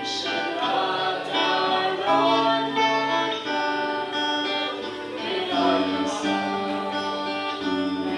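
A small group singing a worship song into microphones, amplified through a PA speaker, with violin and string accompaniment; sustained sung phrases run on without a break.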